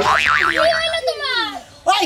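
A cartoon-style 'boing' sound effect with a fast wobbling pitch, lasting about half a second, followed by a voice.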